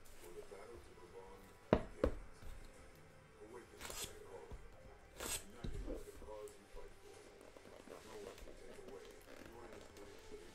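Handling of a cardboard trading-card box: two sharp knocks close together about two seconds in, then brief scraping swishes as the inner card box is slid and lifted out of its case.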